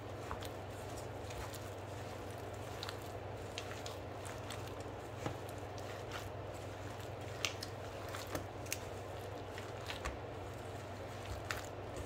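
A gloved hand squishing and kneading imitation crab and cream cheese filling in a stainless steel bowl: soft wet squelches with scattered short clicks, over a steady low hum.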